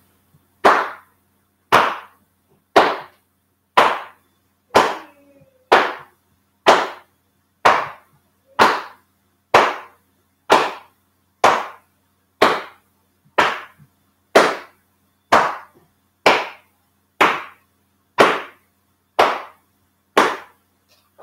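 Hands slapping against the body, the shoulders, in a swinging-arm qigong warm-up. The slaps come about one a second, twenty of them, each trailing off briefly.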